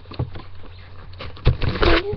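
Handling noise from a webcam being carried by hand: rubbing and knocks on the microphone, loudest about one and a half seconds in and again near the end, over a steady low hum.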